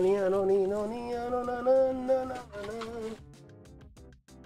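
A man humming a wordless tune in long held notes, stepping slightly in pitch, that stops about three seconds in. Faint background music lies under it.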